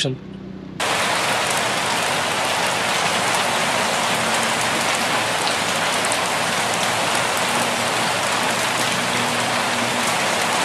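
Steady rain falling on a car's glass, an even hiss that cuts in suddenly about a second in.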